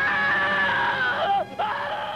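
A long, high-pitched scream, held and sagging slightly in pitch, that breaks off after about a second; after a short gap a second long scream starts.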